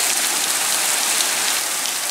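Heavy rain mixed with hail hammering down on a tarmac road and pavement: a steady hiss of drops striking the wet surface.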